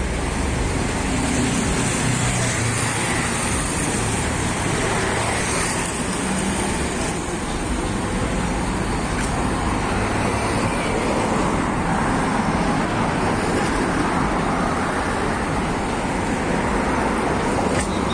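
Steady city street traffic: cars driving past on the road beside the pavement, a continuous noise of tyres and engines.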